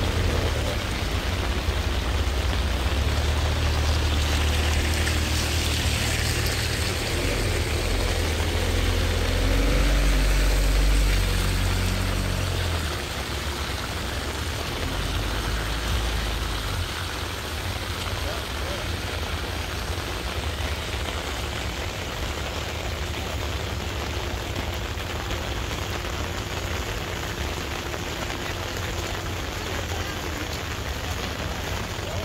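Steady rain falling, heard as an even hiss. A low rumble lies under it for the first half, loudest about ten seconds in, and dies away at around seventeen seconds.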